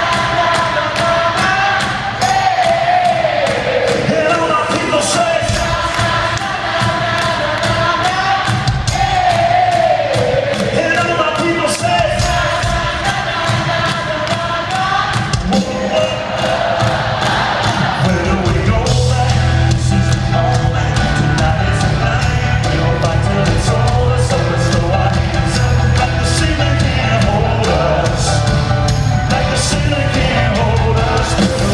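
Live band music played loud through an arena PA, with a singer's voice over it, recorded from among the crowd. About two thirds of the way through, a heavy bass and drum beat comes in.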